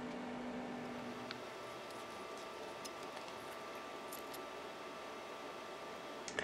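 Quiet room tone: a faint steady hum with a few faint ticks scattered through it.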